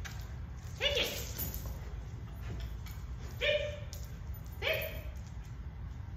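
Dog barking: three short single barks, spaced irregularly, about a second in, past the middle and again a beat later.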